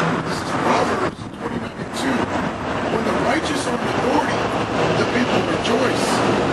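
Steady noise of a passing vehicle on the street, with low voices talking underneath.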